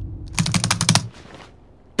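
Fast typing on a computer keyboard: a quick burst of keystrokes lasting about half a second.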